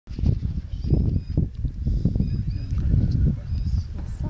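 Birds calling in short, high, level whistles, repeated many times, over a heavy, uneven low rumble.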